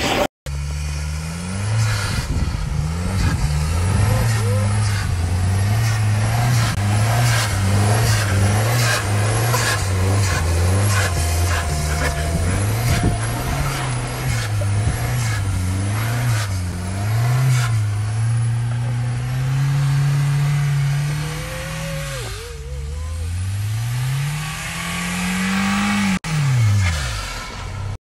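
A car engine revving up and down again and again as the car slides and spins its wheels through snow. The sound briefly cuts out about half a second in and again near the end.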